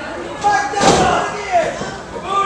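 A sharp smack, then a louder heavy thud on a wrestling ring's mat just under a second in, amid people's voices.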